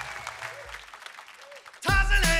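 Studio audience applause dying away, then a live band strikes up loudly just before the end.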